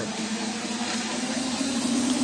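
Ice-hockey arena ambience: an even hiss of crowd and rink noise, with a faint steady hum underneath.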